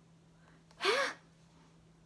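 A young woman's short, sharp gasp of surprise about a second in: a quick breathy intake with a brief voiced rise and fall in pitch.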